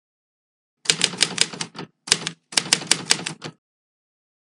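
Typewriter typing sound effect: three quick runs of sharp key strikes, about nine a second, with a short run between two longer ones.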